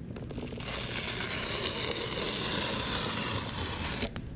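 Cardboard tear strip being pulled along a shipping box, ripping the cardboard open. After a few small crackles, a continuous rip starts about half a second in, grows louder and stops abruptly at the end.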